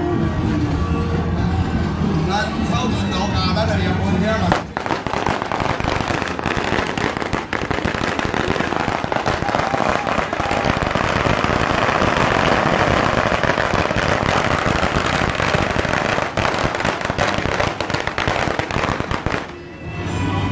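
A long string of firecrackers going off in a loud, dense, continuous crackle for about fifteen seconds, starting about four and a half seconds in. Before it, music with steady low tones plays.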